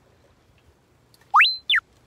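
Comic sound effect added in editing: a quick whistle sliding up to a high held note, then a short one sliding back down, about a second and a half in.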